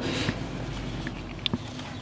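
Low steady background noise in a pause between words, with one faint click about one and a half seconds in.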